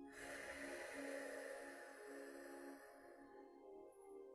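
A long, audible out-breath through a half-open mouth with the throat narrowed: a breathy rush like the sea, as in ocean (ujjayi-style) breathing. It starts abruptly and fades out about three and a half seconds in, over soft new-age background music.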